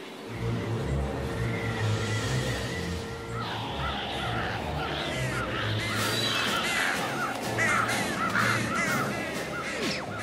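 A flock of crows cawing, many overlapping caws that start about three and a half seconds in and grow denser, over background music with a low pulsing beat.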